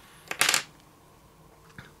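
A brow pencil set down on a hard tabletop: one brief clatter about half a second in, with a faint tick near the end.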